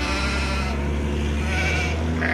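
A flock of sheep with faint bleats over a steady low rumble.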